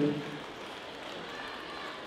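A man's amplified announcing voice dies away in the first moment, leaving steady, faint background noise of a large hall.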